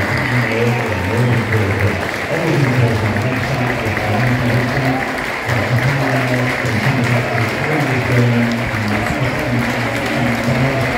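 Crowd of supporters applauding, with music playing over the ground's public-address speakers.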